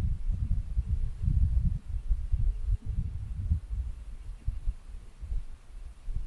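Wind buffeting the camera microphone on an exposed mountain summit: an uneven low rumble that gusts up and down.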